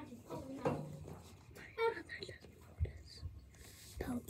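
Faint, partly whispered speech in two short snatches, followed near the end by a few soft low bumps from handling.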